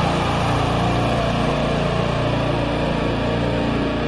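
Heavy metal music: distorted electric guitars holding a sustained chord over a steady low drone.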